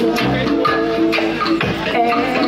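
Live band playing reggae through stage PA speakers: a steady beat of percussion strikes under held melodic tones.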